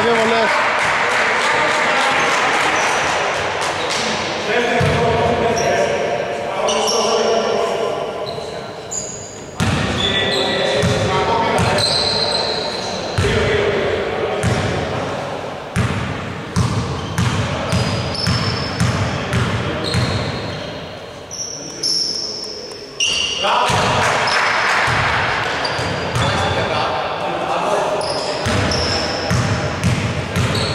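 Indoor basketball game sounds in a reverberant gym: a basketball bouncing on the wooden court, shoes squeaking briefly now and then, and players' voices calling out on the court.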